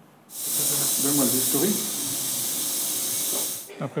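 A loud, steady hiss that starts suddenly just after the beginning and cuts off shortly before the end, with faint voices underneath.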